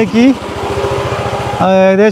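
Riding noise of a Hero Vida V1 Pro electric scooter moving slowly in limp-home mode on a nearly flat battery: steady wind and road noise with a faint even hum, between short bits of speech at the start and near the end.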